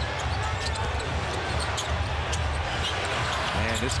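Arena sound of live basketball play: a basketball dribbled on the hardwood court, with short sharp hits scattered through a steady murmur of crowd and hall noise.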